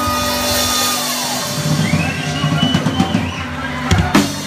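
Live country band closing a song: a held chord, then a drum fill leading into a final hit near the end.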